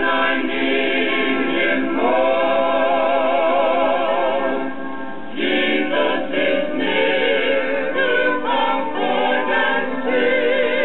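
Gospel hymn singing with vibrato, played back from a vinyl LP record on a turntable. There is a brief break between sung phrases about five seconds in.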